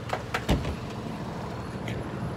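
Parking-lot sound: a steady low engine hum from vehicles, with a few sharp clicks and a low thump about half a second in.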